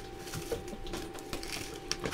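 Soft handling noises: a few light clicks and a rustle of paper or plastic as small items are picked up and moved on a table, with a sharper tick near the end, over a faint steady hum.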